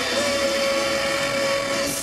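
A heavy rock band playing live, loud and distorted, holding a final sustained chord in a dense wash of guitars and cymbals, with one long high note held over it that breaks off near the end.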